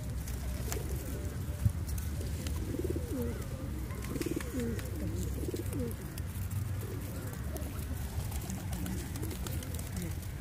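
Feral rock pigeons cooing, a run of rising-and-falling coos bunched in the middle, over a steady low rumble. A single sharp tap about a second and a half in.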